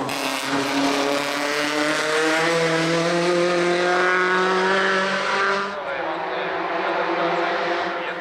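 Suzuki Swift hill-climb race car's engine under hard acceleration, pulling one long, steadily rising note for about five and a half seconds. The sound then cuts abruptly to a quieter, more distant engine note.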